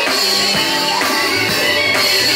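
Loud live gospel music with a drum kit keeping the beat under a woman singing into a microphone, played through the church's sound system.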